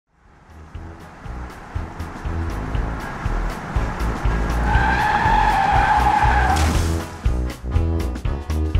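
Upbeat intro music with a steady beat. About five seconds in, a tyre-screech sound effect is held for about two seconds and ends with a short rush of noise.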